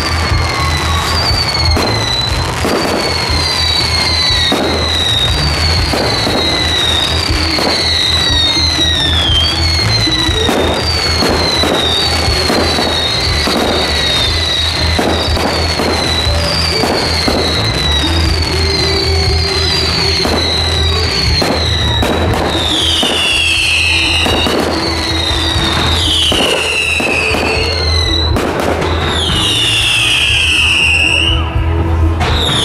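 Fireworks display: a steady run of bangs and crackles, with many short falling whistles that come about once or twice a second and grow bigger near the end, over music.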